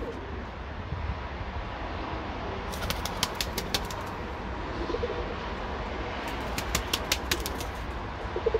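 Birmingham Roller pigeons in an aviary: a quick run of wing claps about three seconds in and another from about six and a half seconds, with faint soft cooing between.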